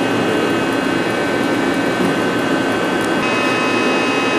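Takisawa TC-4 CNC lathe running: a steady mechanical hum with several high whining tones, which shift pitch about three seconds in.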